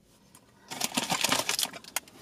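Plastic candy wrapper crinkling in rapid, irregular crackles as a candy is handled and unwrapped, starting just under a second in.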